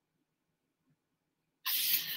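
Near silence, then near the end a sudden short papery hiss as a drawing sheet is slid and turned across the desk.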